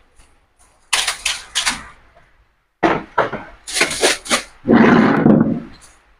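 A broom sweeping: quick swishing strokes in two bunches, with a few knocks, then a longer, louder scrape near the end.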